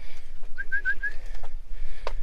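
A bird calling: a quick run of four short, slightly rising notes, all at the same pitch, about half a second in.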